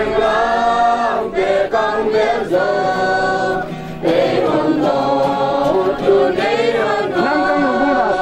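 A mixed crowd of men, women and children singing a hymn together in long held notes, with short breaks between phrases.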